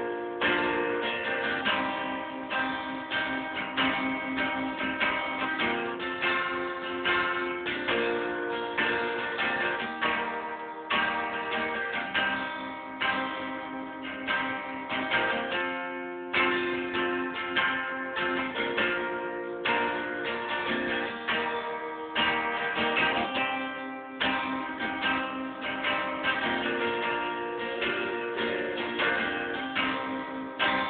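Guitar strumming chords in a steady rhythm.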